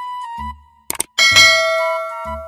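Sound effects for a subscribe-button animation: a double mouse click and short soft pops, then a bright notification bell ding about a second in that rings on and slowly fades.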